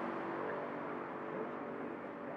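Steady, fairly quiet background hum of a vehicle engine and street traffic.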